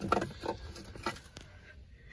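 A few light knocks and rustles of handling noise as someone settles into a car's driver's seat, dying away to quiet near the end.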